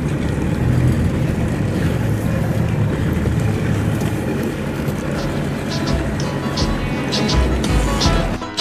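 A small boat's motor running steadily, with music coming in over the last few seconds.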